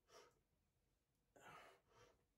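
Faint, forceful breaths out through the mouth: a short one just after the start and a longer one about one and a half seconds in. A man exhales with effort on each rep of dumbbell side bends.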